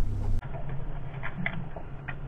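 Muffled sound from a camera underwater near a lure on a line: a steady low hum with scattered small clicks and ticks. About half a second in it replaces a heavier open-air rumble.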